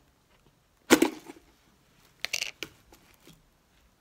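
A Pringles can handled and tapped close to the microphone: one loud sharp knock about a second in, then a quick cluster of clicking taps a little after two seconds.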